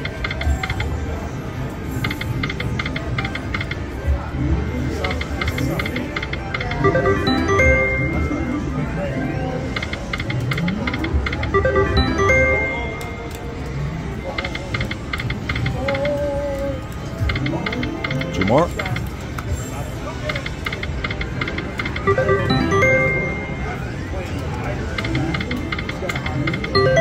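Ainsworth Temple Riches video slot machine spinning its reels again and again, each spin with a short run of electronic chime tones, over the casino's background chatter.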